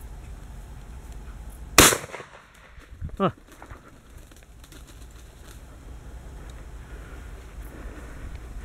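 A single shotgun shot about two seconds in, fired at an incoming pigeon, with a short ring-out afterwards. About a second later comes a brief voice-like call.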